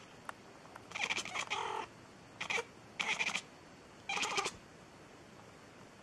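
A domestic cat's sounds in four short bursts, the first and longest about a second in, the last near the middle.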